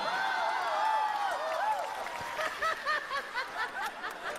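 A person's high-pitched giggling: a drawn-out, wavering squeal for about two seconds, then a quick run of short laughs at about three a second.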